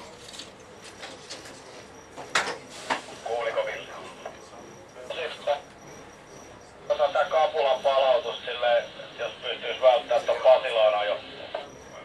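Speech over a two-way radio, thin and narrow in range: short bursts around three to five seconds in, then a longer transmission from about seven seconds that cuts off sharply near the end, over a faint steady high tone.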